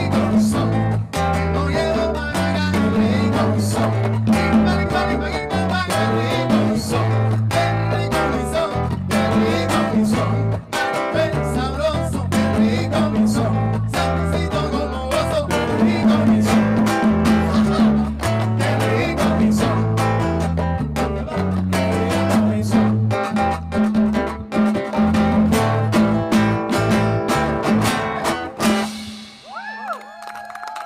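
Live band playing with electric bass, congas, trumpet and acoustic guitar over a steady bass line and busy hand percussion. The tune ends near the end.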